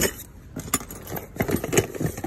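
Small metal items jangling and clinking, with several sharp knocks, as a plastic-wrapped wooden jewelry box is handled; the loudest clink comes near the end.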